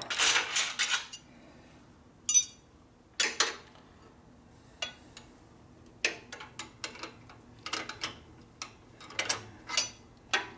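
Steel wrenches clinking against each other and against motorcycle hardware: a loud metallic clatter in the first second, a few sharp single clinks, then a quicker run of small clicks and clinks over the last four seconds as a combination wrench works on the clutch cable fitting.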